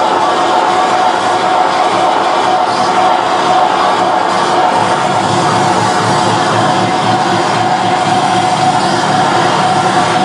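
Harsh noise music played live: a loud, unbroken wall of distorted noise with a steady tone held through it.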